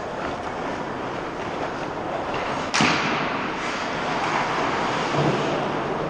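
Ice hockey play in an indoor rink: a steady noise of skating and play, with one loud, sharp crack about three seconds in, like a stick or puck striking hard.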